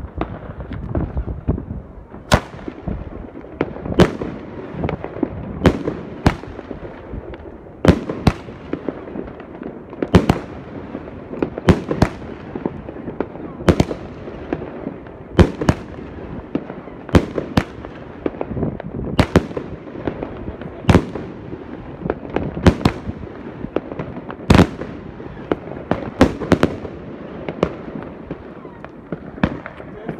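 A Piromax Fireball PXB2203 consumer firework battery (16 shots, 30 mm) firing its shots in sequence. Sharp bangs come every second or two, with steady rushing noise between them.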